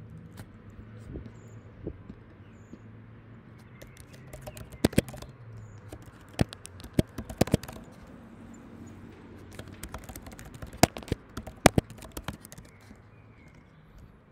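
Typing on a computer keyboard: irregular clusters of sharp keystroke clicks with pauses between them, over a faint low steady hum.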